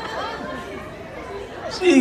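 Faint, indistinct talk echoing in a large hall, with a louder voice breaking in near the end.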